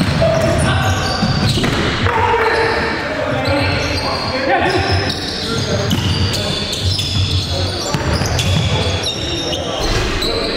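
Live basketball game sound in a gym: a ball bouncing on the hardwood court amid players' voices, all echoing in the large hall.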